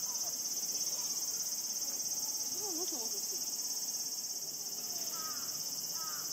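Steady high-pitched drone of insects, with faint, distant human voices rising and falling in the background.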